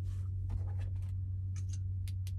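Light rustling and a few small clicks as things are handled inside a semi-truck sleeper cab, over a steady low hum.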